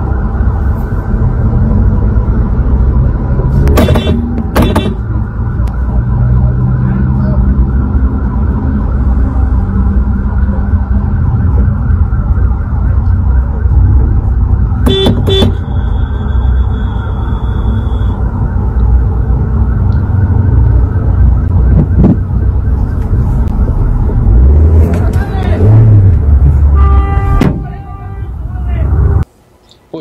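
Loud, steady low rumble of running vehicle engines and traffic picked up by a phone recording from inside a car. Short pitched tones sound a few seconds in, about halfway and again near the end, with some rising and falling tones shortly before the end. The sound cuts off suddenly just before the end.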